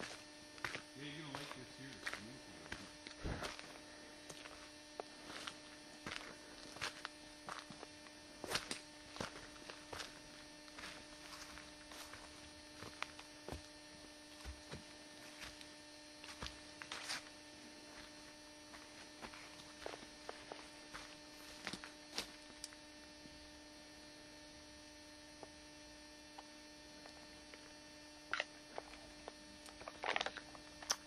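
Faint, steady hum, typical of a tape camcorder's own recording noise, with scattered soft clicks and taps of footsteps on a trail and camera handling, growing sparse after about halfway.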